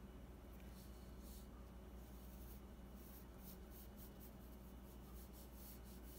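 Faint, scattered strokes of a graphite pencil on paper over a steady low room hum.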